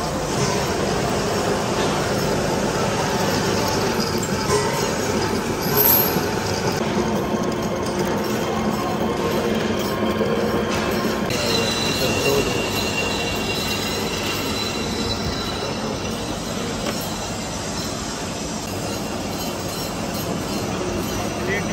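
Old manual lathe turning a large steel shaft while the cutting tool takes a cut along it: a steady, dense machining noise. About halfway through, a thin high squeal of the tool on the steel joins in.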